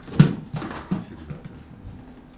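Footsteps on a stage floor, a sharp first step and then several softer ones in an uneven walking rhythm.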